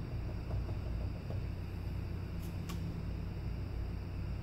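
Steady low background hum with an even hiss, and two faint light clicks about halfway through.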